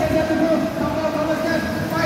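Electric motors of 2WD RC buggies whining steadily as the cars race around the track, with voices in the background.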